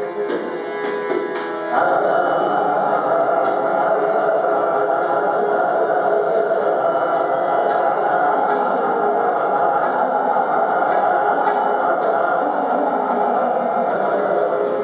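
Live Hindustani classical vocal music in raag Shree: a male singer with harmonium, tanpura drone and tabla. The music grows fuller and louder about two seconds in.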